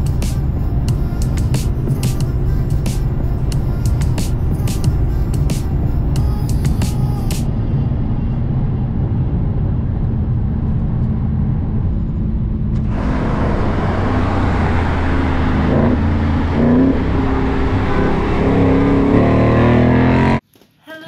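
Background music mixed with the sound of cars driving at speed. About thirteen seconds in the sound turns suddenly fuller and brighter, and a car engine is heard revving.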